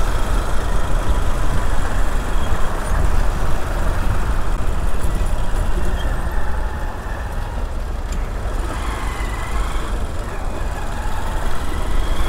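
Motorcycle engine running at low speed in stop-and-go city traffic, with the cars, trucks and buses around it, over a steady low rumble of wind on the microphone.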